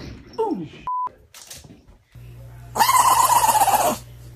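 A small white fluffy dog howling: one loud, wavering cry in the last second or so that stops abruptly. Before it, about a second in, a short steady electronic beep.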